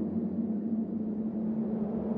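Quiet instrumental music: a steady, sustained low drone with no vocals.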